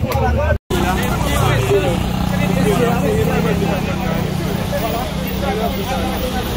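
Several people talking at once close by, over a steady low engine hum; the sound cuts out for an instant just over half a second in.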